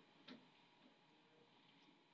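Near silence with one faint short click about a third of a second in: a pen stylus tapping the writing surface while handwriting on a digital whiteboard.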